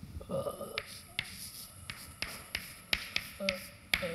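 Chalk writing on a blackboard: about ten sharp, irregular taps as the chalk strikes the board.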